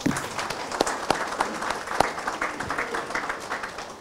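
An audience applauding, many hands clapping, dying away near the end.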